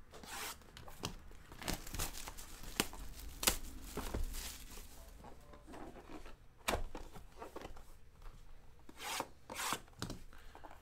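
Plastic shrink-wrap being torn and peeled off a cardboard trading-card hobby box: irregular rustling, rubbing and short sharp tearing sounds. The box lid is lifted open near the end.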